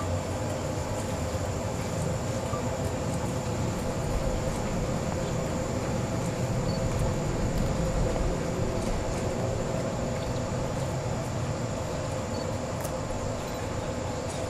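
Electric train running at a station: a steady low rumble with a constant hum, a little louder about eight seconds in.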